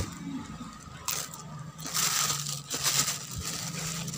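Thin plastic bag rustling and crinkling as it is handled and lifted, in a few short bursts.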